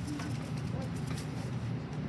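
Hands rubbing and rolling soft clay on a wooden work board to form a small coil, a faint brushing sound over a low, steady murmur of voices in the room.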